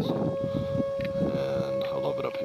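Wind buffeting the camera microphone, with a steady held musical note over it that steps up in pitch at the start. The note carries on as the wind noise fades out near the end.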